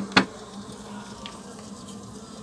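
Uruçu nordestina stingless bees (Melipona scutellaris) buzzing steadily in their opened hive box. A single short knock just after the start.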